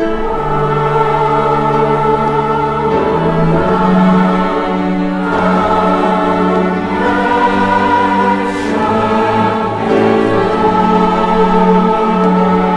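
Mixed choir singing with a string chamber orchestra, held chords that change every second or two.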